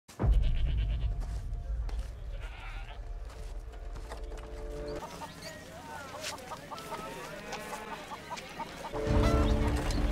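Film soundtrack of a medieval market: deep, low music with held notes and a goat bleating. About halfway through it changes to busier market ambience with animal calls and voices. The deep music comes back near the end.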